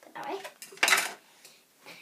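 A hair comb dropped into a plastic caddy among hair-product bottles: one short clatter about a second in.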